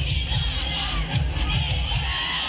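A large street crowd shouting and cheering over loud music with a heavy, repeating bass beat.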